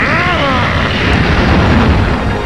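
A man's short, strained cry of effort as he pushes against a crushing weight. Under it runs a loud cartoon rumbling sound effect that grows deeper toward the end.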